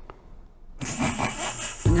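A short quiet moment, then soft, breathy laughter about a second in.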